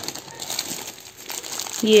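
Clear plastic wrapping crinkling as plush toys are handled, an uneven run of small crackles.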